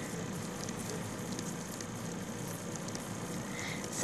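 Steady, low background hiss from the recording, with no other clear sound.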